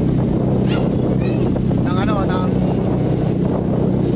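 Small motorcycle engine running steadily, a constant low hum with no change in pitch, under a few brief bits of voice.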